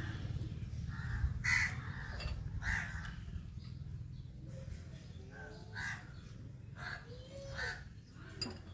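Short harsh bird calls repeated about six times, a second or so apart, over a low steady hum.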